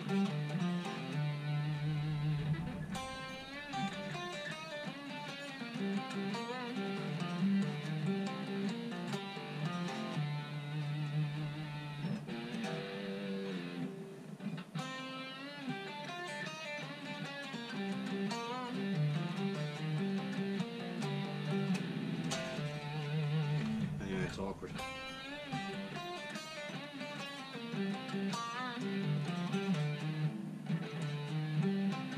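Electric guitar playing a fast lead lick over and over, with slides and wavering string bends, with short breaks between the run-throughs. It is a lick still being built up to speed.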